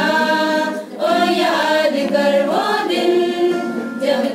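Women's church choir singing a hymn without instruments, holding long notes, with a short pause for breath about a second in.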